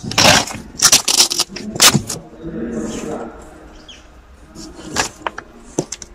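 Rustling, scraping and knocking of a car's felt-covered cargo floor board and boot carpet being lifted and moved by hand: a run of loud scrapes and knocks in the first two seconds, then a few sharp clicks near the end.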